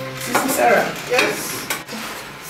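Food sizzling and frying in a pot on a kitchen stove, with stirring.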